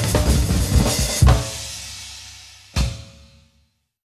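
A drum kit playing busily with cymbals, then a hard accented hit about a second in. The cymbals ring down, a single last hit comes near three seconds in, and the sound fades out.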